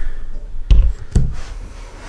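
Two heavy knocks about half a second apart, close to the microphone: a camera being handled and set down on a desk.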